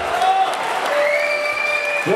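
Audience applauding just after the accordion music stops, with a long, high held whistle through the second half.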